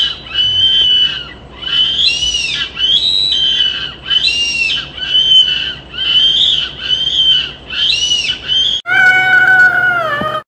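About ten high-pitched squeals, one after another, each lasting under a second, followed about a second before the end by a girl's loud, sustained scream.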